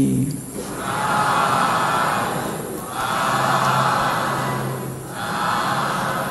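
A large audience calling out together in unison three times, three long swells of many voices. This is the customary 'sadhu, sadhu, sadhu' with which Burmese Buddhist listeners approve a monk's sermon.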